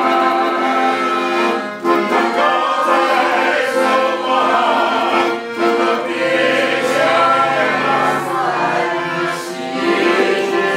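A man singing while he plays his own accordion accompaniment, the accordion holding sustained chords under the vocal line.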